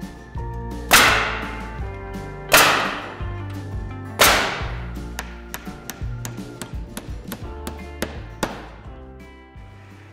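Three loud, sharp knocks about a second and a half apart, each with a short ringing tail, followed by a few lighter knocks, as plywood siding is fastened to a wall. Country-style guitar music plays underneath.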